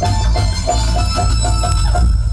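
Loud dance music with a short melodic figure repeating over and over above a heavy, steady bass.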